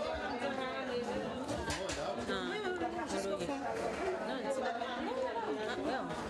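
Several people talking at once: overlapping chatter from a group, with no single voice standing out.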